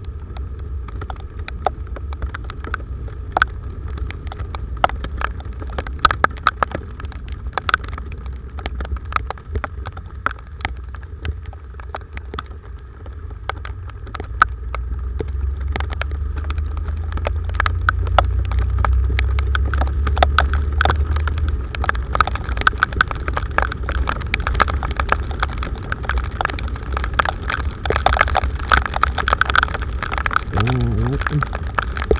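Raindrops ticking sharply and irregularly on the camera while a Honda motorcycle rides through heavy rain, over a steady low rumble of wind and engine that grows louder for a few seconds in the middle as the bike speeds up.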